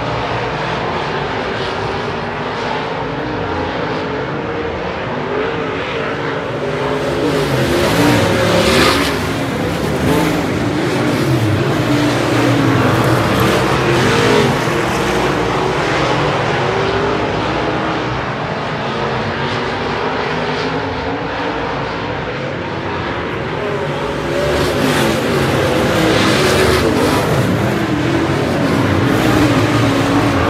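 A pack of dirt-track race cars running laps on a dirt oval, their engines rising and falling as they pass through the turns, with louder swells about eight seconds in and again near the end.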